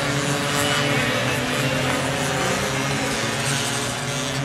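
Several small racing minibike engines buzzing together at high revs as the bikes pass through a corner, their pitches shifting a little about two to three seconds in as riders change throttle.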